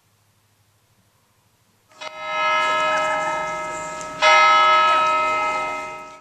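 Large tower bell struck twice, about two seconds apart, starting about two seconds in; each stroke rings with many steady tones and fades slowly, the second louder than the first.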